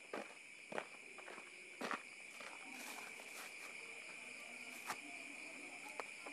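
A few footsteps on a dirt path, the clearest in the first two seconds and one more near the end, over a steady high-pitched chirring of night insects.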